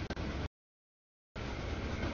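CSX double-stack freight train rolling past, its rumble and wheel noise heard in short chunks. The chunks are broken by a stretch of dead silence from audio dropouts in the feed: about half a second in, the sound cuts out for nearly a second, then returns.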